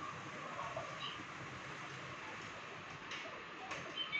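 Faint, steady hiss of room tone heard through a video-call audio stream, with a couple of faint clicks near the end.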